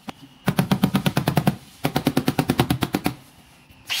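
Hand-held pneumatic hammer tool striking the sheet metal of a car's door pillar in two rapid runs of about a dozen strikes a second, each lasting a second or so, with a short pause between.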